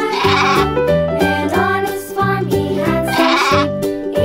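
Children's song backing music with a steady beat, over which a sheep bleats twice: once at the start and again about three seconds in.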